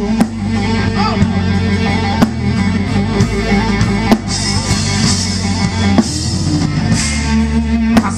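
A live blues band playing a slow blues instrumental passage between sung lines: electric guitar with bent notes over bass guitar and drum kit, with cymbals swelling in the middle.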